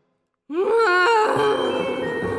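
A loud, wavering groan-like snore from a cold-stricken cartoon character, mistaken for a ghost's moan. It starts about half a second in after a moment of silence and slides up and down in pitch.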